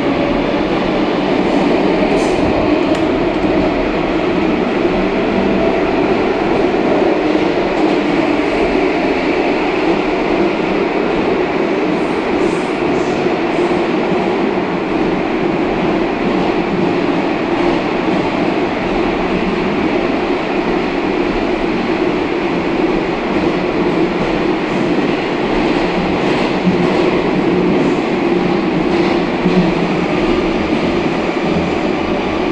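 Moscow Metro Rusich (81-740/741) articulated train running at speed through a tunnel, heard inside an empty car: a loud, steady rumble and hum of the wheels and running gear.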